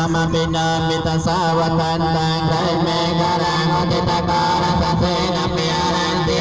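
Buddhist monks chanting together through microphones and a loudspeaker, a steady low monotone held on one pitch throughout, with only slight wavers.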